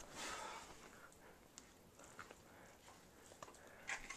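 Faint breathing from effort during dumbbell curls, with a breathy exhale right at the start, then a few light clicks over near silence.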